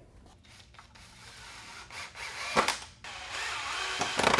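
Cordless drill/driver driving screws through steel framing connectors into two-by-four posts, the motor running in short spells, with one sharp knock about two and a half seconds in.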